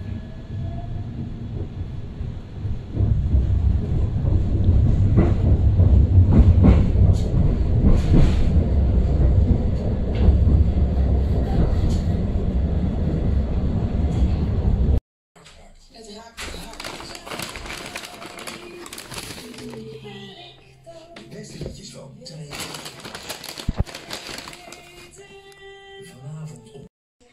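Tram running on its rails, a steady low rumble heard from inside the car, growing louder about three seconds in. It cuts off abruptly about halfway through, giving way to quieter sounds with clicks.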